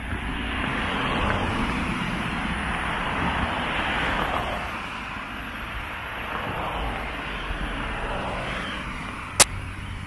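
Road traffic passing on the adjacent street: tyre and engine noise that swells and fades over the first few seconds, with a second, weaker swell after about six seconds. A single sharp click near the end.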